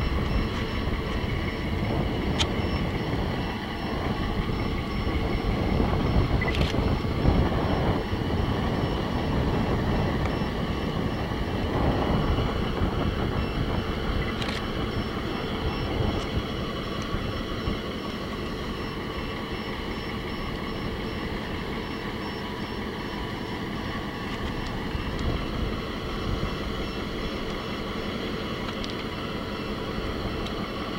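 Heavy diesel construction machinery running steadily, a mobile crane working a lift. The low rumble is a little louder in the first half and eases off after about halfway, with a few faint clicks.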